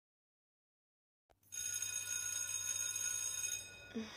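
An electric bell ringing steadily for about two seconds, with a low hum under it, then dying away.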